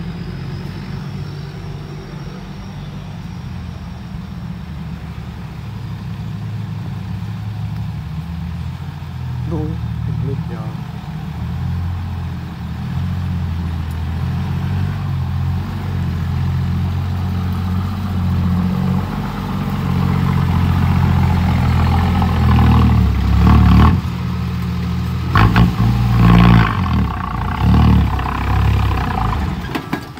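Diesel engine of a loaded Isuzu dump truck running, growing steadily louder as the truck approaches and drives past close by. Near the end come several sharp surges in engine loudness as it is revved.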